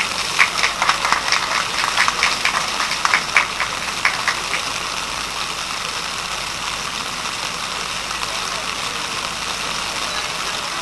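Scattered hand clapping, a few irregular claps a second, dying away after about four seconds and leaving a steady background hubbub.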